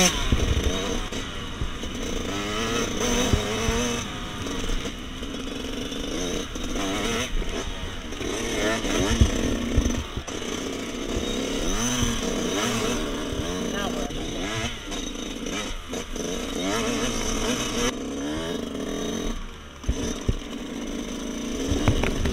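Dirt bike engine running as the bike is ridden, its pitch repeatedly rising and falling as the throttle is opened and closed.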